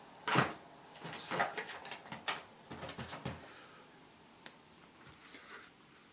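Cardboard game cards being drawn from a pile and laid down on a game board by hand: a few short rustling slides and taps in the first three and a half seconds, then a small click about four and a half seconds in.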